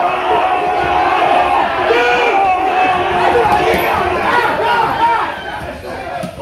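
A crowd of people shouting and yelling at once, many loud voices overlapping throughout, easing off slightly near the end.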